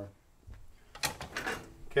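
Wooden guitar routing templates being handled: a soft thump about half a second in as one is set down on the stack, then a short run of knocks and clatter as the boards hit each other and another is picked up.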